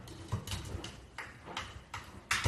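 Beagle puppy's paws knocking and scrabbling inside a front-loading washing machine drum: a string of light, uneven thumps, a few a second.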